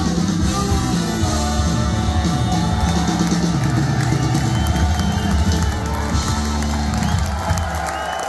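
Live rock band with horns, guitar, bass and drums playing the closing bars of a song, with the crowd cheering and whooping. The band stops near the end, leaving the crowd cheering.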